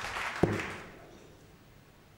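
Crowd applause dying away to the quiet hum of the arena, with one brief thump about half a second in.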